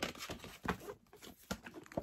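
A hardcover book and its paper dust jacket being handled: irregular rustling and light taps of paper and board.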